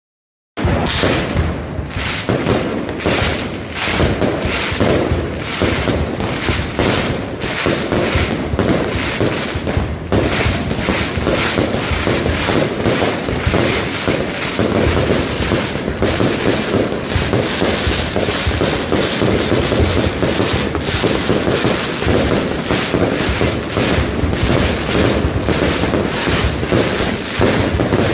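Mascletà: a dense, unbroken barrage of firecracker bangs and aerial salutes going off in rapid succession, starting suddenly about half a second in.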